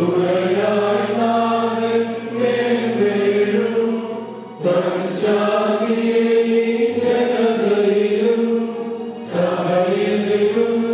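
Orthodox liturgical chant sung by several voices in long held notes, with new phrases starting about halfway through and again near the end.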